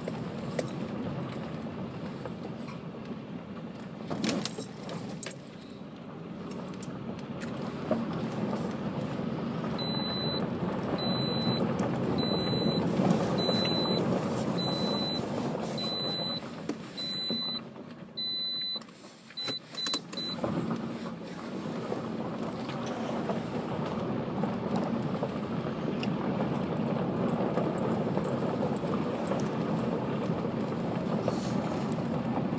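A car's tyres crunching over a gravel road at low speed, heard from inside the car as a steady rumble. About ten seconds in, a series of short high electronic beeps sounds roughly once a second for about ten seconds.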